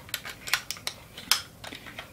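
Light, irregular clicks and taps of hands working a plastic 35mm film camera while the film leader is fed into the take-up spool slot.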